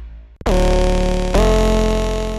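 Serum software synthesizer playing a preset: two held synth notes, the first starting about half a second in and the second about a second later, each opening with a quick downward pitch drop and sitting over a deep sub tone.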